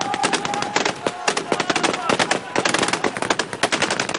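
Rapid automatic gunfire from several rifles and a machine gun firing at once, the shots dense and overlapping.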